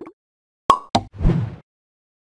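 Animated end-card sound effects: a sharp pop with a short ring about two-thirds of a second in, a second click just after, then a brief whoosh.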